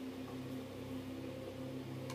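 Electric fan running with a steady low hum.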